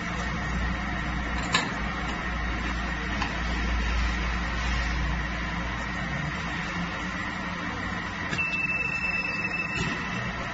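Pass-through glass washing machine running steadily, its rotating brush heads and mesh-belt conveyor giving a constant mechanical noise with a low hum. A sharp click comes about a second and a half in, and a steady high tone sounds for about a second and a half near the end.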